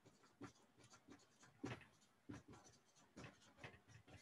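Dry-erase marker writing on a whiteboard: a faint string of short, irregular strokes as the words are written out.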